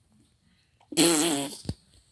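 A kitten's short growling cry, about half a second long, starting about a second in, with a wavering pitch and a hissy edge.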